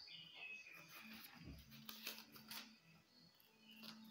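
Near silence: quiet room tone with a faint steady hum and a few faint clicks and rustles.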